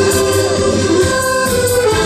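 Live accordion band, several accordions playing a sustained melody together in chords over a steady beat.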